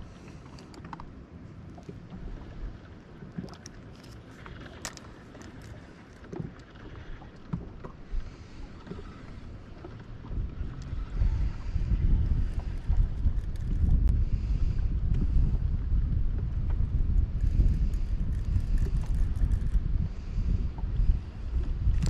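Wind buffeting the microphone, a gusty low rumble that grows much stronger about halfway through, with a few faint clicks.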